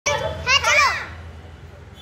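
A boy's voice calling out in a short, high exclamation with sliding pitch during the first second, over a low steady hum.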